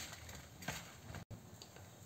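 Faint handling of salted, turmeric-coated brinjal pieces on a steel plate, with one soft click, then low room tone after a brief dropout.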